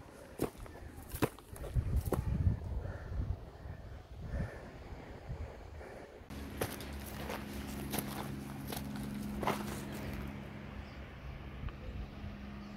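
Footsteps crunching and scuffing on dry grass and loose rock as a hiker climbs a steep slope, irregular steps. About six seconds in, a steady low hum joins under the steps and keeps on.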